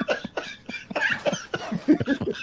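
Men laughing in short, rapid bursts.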